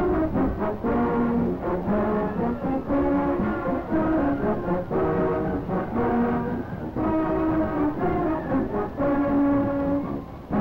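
High school marching band playing, the brass section holding long chords that change from phrase to phrase.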